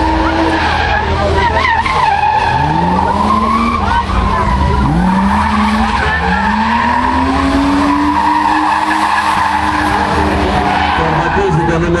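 A car drifting: its engine revving up in several rising sweeps as the throttle is worked, with the tyres squealing in a long wavering screech as the car slides.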